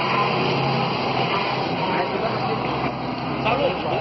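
A state transport bus's diesel engine running steadily close by, a low even hum, with people talking faintly in the background toward the end.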